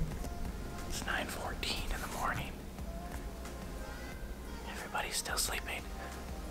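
Whispering in two short stretches, about a second in and again near the end, over a steady low hum.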